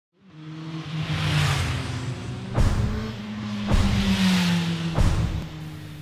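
Intro sting: music blended with a motor-vehicle engine sound effect, two swelling whooshes, and three sharp hits about a second apart. It fades in from silence.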